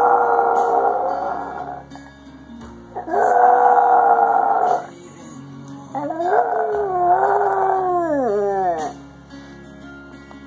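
Yorkshire terrier howling along to a song: three long howls, the first already under way, each rising in pitch as it starts, the last sliding down in pitch and trailing off near the end.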